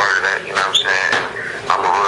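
A man talking over a phone line, the voice thin with no bass, and a brief high chirp less than a second in.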